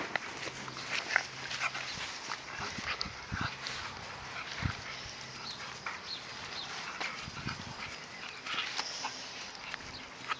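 Doberman puppies playing over a rag on grass: scuffling and sniffing, with many scattered small clicks and short, high-pitched puppy sounds.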